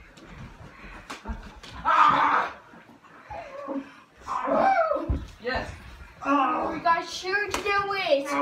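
People's voices exclaiming and calling out in bursts, with a few sharp thuds: about a second in, around five seconds in, and near the end.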